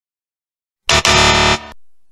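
Complete silence for almost a second, then a short, loud buzzer sound effect in two parts, a brief blip and a longer held buzz, of the kind that marks a wrong answer.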